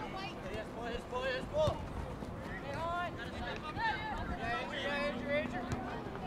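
Distant shouts and calls from players and coaches on a soccer field during play, several short calls one after another. A steady outdoor background hiss runs beneath them.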